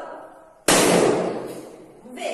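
A pink party balloon bursting once, about two-thirds of a second in: one sharp bang that rings on in the room and fades over about a second.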